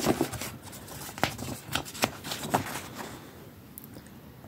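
Hands rummaging in an opened cardboard box: scattered rustles, scrapes and light knocks of cardboard and packaging, dying down about three seconds in.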